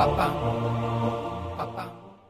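Voice-only closing song, with no instruments: low sustained voices carry the tune, with short accented syllables at the start and twice near the end, fading out at the close.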